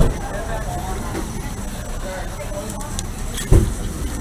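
Steady low rumble of nearby motor vehicles on a city street, with faint voices behind it, and one loud thump about three and a half seconds in.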